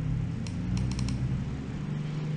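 A quick run of five or six laptop keyboard or touchpad clicks about half a second to a second in, over a steady low hum.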